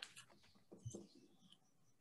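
Near silence, with a few faint clicks and rustles as a LaserDisc in a plastic sleeve is picked up and handled.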